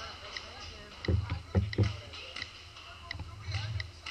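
Dull knocks and thuds as a paintball marker carrying a mounted action camera is moved and bumped about, three louder ones close together a little over a second in, with faint voices in the background.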